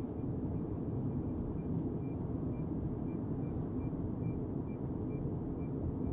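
Steady low road and tyre noise heard inside the cabin of a Tesla Cybertruck cruising at about 34 mph, with no engine sound. Faint high pips repeat about twice a second through the second half.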